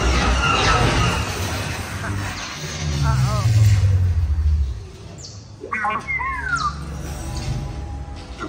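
Theme-park dark-ride soundtrack: music and effects, with a deep rumble swelling from about three seconds in until nearly five seconds. About six seconds in come a few high, warbling electronic chirps.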